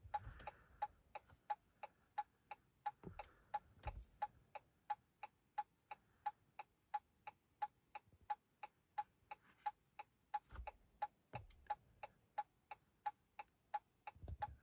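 Chrysler 200 hazard-light flasher ticking steadily, about three ticks a second.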